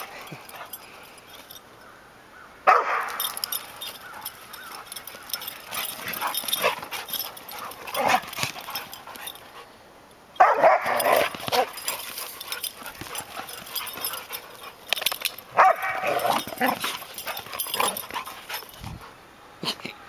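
Dogs barking and vocalizing as they play-fight, in several bursts, the loudest starting about three, ten and fifteen seconds in.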